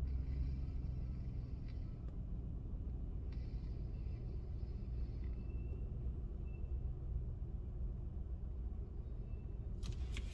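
Low, steady rumble of a car, heard from inside its cabin while it sits in slow traffic.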